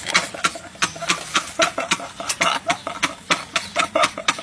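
A quick, even run of sharp clicks or claps, about four a second.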